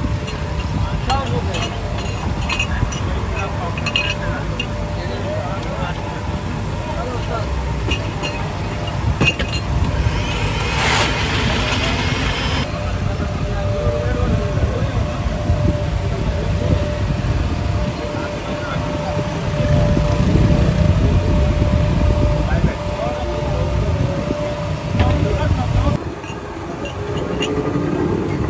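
Roadside street noise: a steady rumble of passing traffic with people talking in the background, and a brief louder rush of noise about eleven seconds in.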